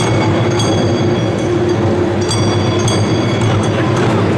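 Taiko drumming: large barrel-shaped Japanese drums beaten in a dense, continuous, loud pattern, with small hand cymbals ringing out several times over it.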